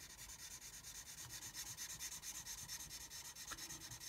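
The broad brush tip of a Stampin' Blends alcohol marker rubbing over card stock in faint, quick repeated colouring strokes.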